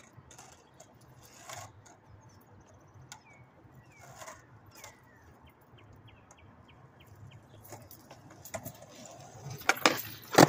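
Skateboard wheels rolling on concrete, getting louder as the board comes closer, then sharp clacks of the board near the end. Faint short chirps and light clicks earlier on.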